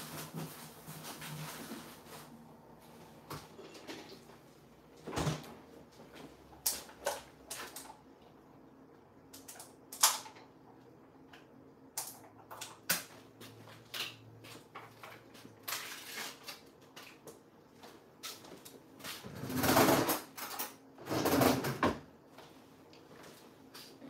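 Off-camera kitchen handling noises: scattered clicks and knocks, a sharp knock about ten seconds in, and a louder stretch of rustling and clatter near the end.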